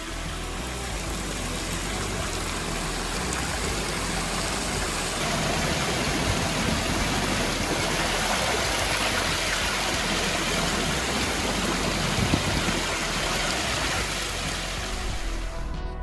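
Water pouring in thin sheets off a tiled fountain wall into a shallow trough below, a steady splashing rush that grows a little louder about a third of the way in.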